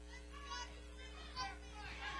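Scattered voices from a small crowd of wrestling spectators, shouting and calling out faintly in a couple of short bursts, over a steady low electrical hum.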